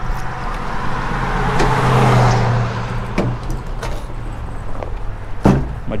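A car passing on the road: its noise swells to a peak about two seconds in and then fades. A few light knocks sound as the pickup's tailgate is opened and gear in the bed is handled, with a sharper knock near the end.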